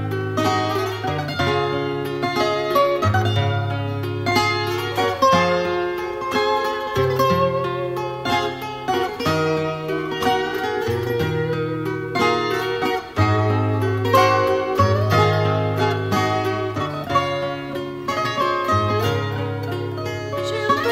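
Instrumental fado passage: a Portuguese guitar plays the melody over strummed guitar chords and a bass line that steps every second or two.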